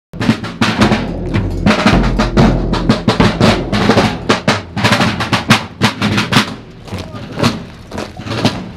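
Rope-tension field drums, several snare drums and a bass drum, beating a marching cadence with rolls. The strokes thin out and grow quieter near the end.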